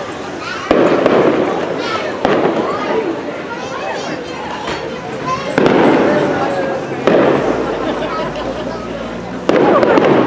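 Aerial fireworks shells bursting overhead: five booms spaced one to two and a half seconds apart, each trailing off slowly.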